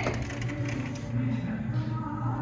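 Sliding glass door rolling open along its track, with a click at the start as it is unlatched.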